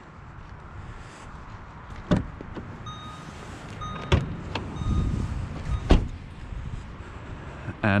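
A VW Golf GTI's driver door is opened and the bonnet release lever inside is pulled: a few sharp clicks and clunks with shuffling between them. Three short beeps sound about three to four seconds in.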